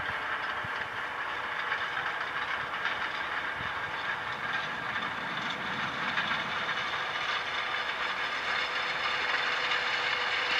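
Case Puma 210 tractor pulling a Kuhn seed drill across a field, its six-cylinder diesel engine and the drill running in a steady mechanical noise with a faint constant hum.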